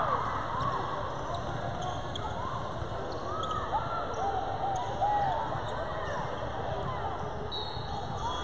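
Basketball sneakers squeaking on a hardwood court in a large gym: many short, rising-and-falling squeaks as players run and cut, with a basketball bouncing and low thuds of feet.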